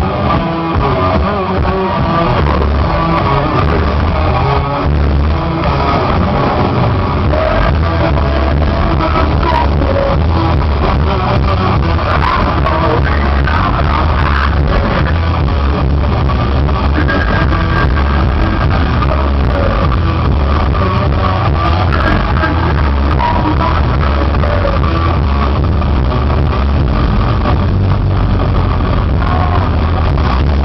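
Heavy metal band playing a song live and loud, with distorted electric guitars, bass and drums, heard from within the audience.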